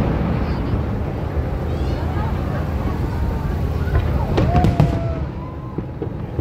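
Aerial fireworks going off in a continuous rumble of booms, with a few sharper bangs about four seconds in.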